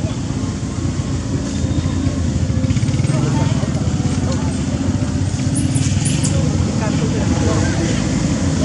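A steady low rumble of outdoor background noise, with people talking faintly in the background and a couple of brief high squeaks about six seconds in.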